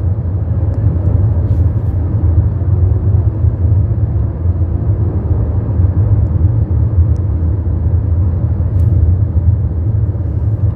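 Steady low rumble of a car driving, heard from inside the cabin: road and engine noise, with a few faint ticks.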